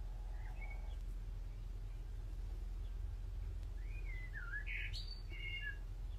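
A bird chirping short gliding calls: a couple near the start, then a quick run of them in the second half, over a steady low hum.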